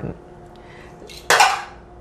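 A single short, sharp handling noise, a rustle-and-clatter, as a lace front wig is turned over in the hands, about a second and a half in.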